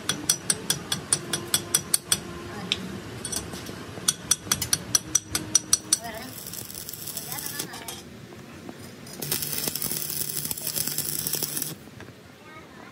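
A metal hand tool tapping sharply and repeatedly on the welded steel shaft, about four or five strikes a second in two runs, knocking at the weld bead. About nine seconds in, an electric welding arc starts with a steady crackling hiss and a low hum, then cuts off just before the end.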